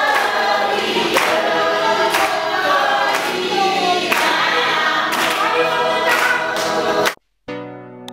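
A group of voices singing together, with a sharp beat about once a second. The singing cuts off suddenly about seven seconds in, and after a brief gap quieter instrumental music with held notes begins.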